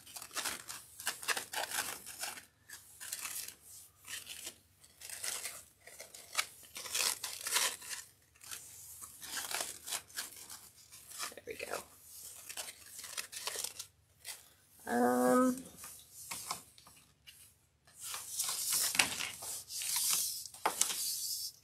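The ribbon loops and tails of a large ribbon bow rustling and crinkling as they are handled and rearranged. The sound comes as many short, irregular scratchy rustles.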